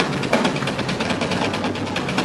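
Rock drum kit in a live drum solo: a rapid, unbroken run of strokes on drums and cymbals, heard loud in a reverberant concert hall.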